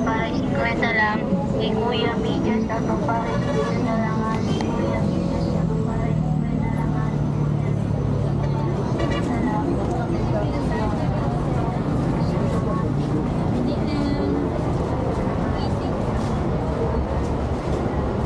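Busy market ambience: many people's overlapping, indistinct voices over steady traffic noise from vehicles.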